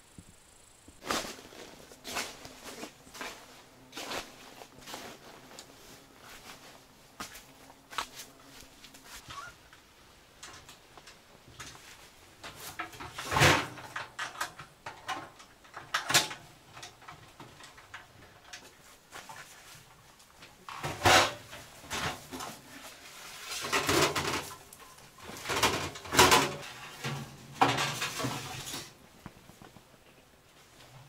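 Irregular metallic clanks and knocks as the parts of a sheet-metal tent stove and its chimney pipe sections are handled and fitted together. There are several louder clatters, with bursts of them in the later part.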